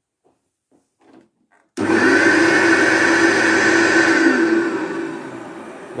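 Hoover Turbopower U1060 upright vacuum cleaner switched on about two seconds in, its motor starting suddenly and running with a steady whine. It is then switched off and winds down, the whine sliding lower and fading.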